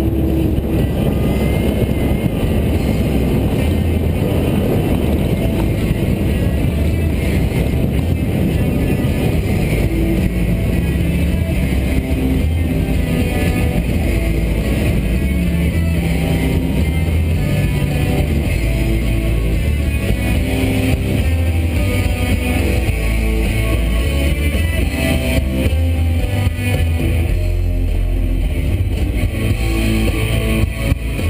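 Music with guitar playing over the steady low running of a motorboat's engine as the boat moves along.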